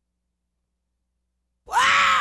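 Silent gap between two tracks of a sixties soul compilation. About a second and a half in, the next song starts abruptly with a loud, long vocal cry that rises and falls in pitch, with the band coming in under it.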